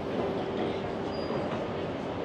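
Steady city street background noise with a continuous mechanical hum running under it.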